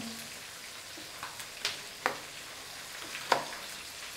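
Kitchen knife chopping through napa cabbage onto a wooden cutting board: a few sharp knocks, about one and a half, two and three and a quarter seconds in, over a steady hiss.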